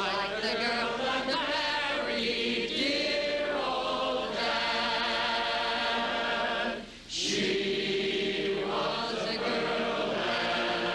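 A studio audience singing together as a large, loose chorus in barbershop style, holding long notes. The singing breaks off briefly about seven seconds in, then another chord is held.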